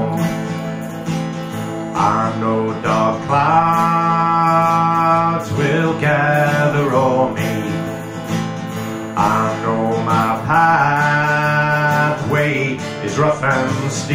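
Live acoustic folk music: an acoustic guitar and an Appalachian mountain dulcimer play a slow instrumental passage between sung verses, with a sustained low accompaniment under two bending melodic phrases.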